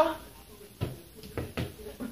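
Three dull thumps in the second half, from a small ball being kicked and bouncing on the floor along with the player's footsteps.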